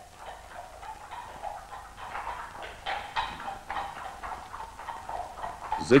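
Horse hooves clip-clopping irregularly on a paved street at a moderate level, over the faint hiss of an old film soundtrack.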